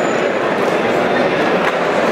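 Crowd of spectators talking at once in an indoor hall: a steady, unbroken sound of many overlapping voices.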